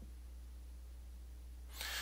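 Quiet, steady low electrical hum under the recording, with a short intake of breath near the end.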